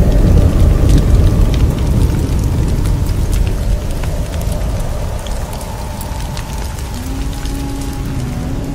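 Logo-intro sound effect: a loud, deep rushing rumble with scattered fine crackles, like blowing sand, loudest at the start and slowly fading. A few held musical notes come in near the end.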